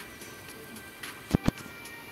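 Electronic lottery-draw game music with a steady tone and light regular ticking, about four ticks a second, as the virtual ball machine runs. About one and a half seconds in there are two quick, loud low thumps as the next numbered ball drops out.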